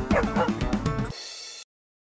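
Logo jingle music with a dog's short yips and barks mixed in over the first second, ending on a held note that cuts off suddenly shortly before the end.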